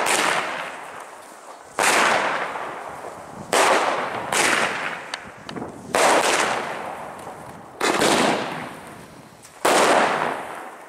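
Aerial fireworks bursting in the sky, five sudden bangs about two seconds apart. Each bang is followed by a long tail that fades away over a second or more.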